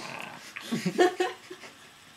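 A person laughing in short breathy bursts, loudest about a second in, then trailing off.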